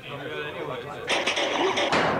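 Speech mixed with the soundtrack of a 1990s TV beer advert. About a second in, a hissing noise comes in, becomes the loudest sound, and stops abruptly near the end.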